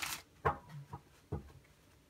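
A deck of tarot cards being shuffled, the rustle stopping just after the start, followed by three short knocks as the cards are tapped and set down on the tabletop.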